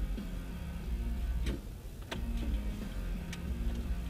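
Car cabin: a steady low engine and road rumble under quiet radio music, with a few sharp ticks from the turn signal as the car turns.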